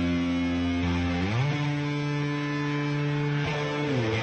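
Semi-hollow-body electric guitar holding ringing chords as the song opens. It glides up to a new chord about a second and a half in, and slides back down near the end.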